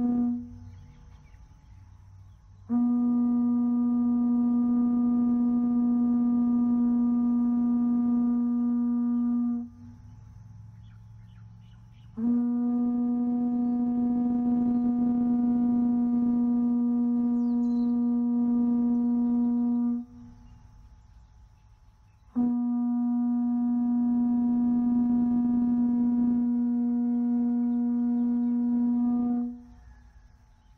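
Conch shell trumpet (pū) blown in long, steady single-pitch blasts. The end of one blast comes just after the start, then three more follow, each held about seven seconds with short pauses between.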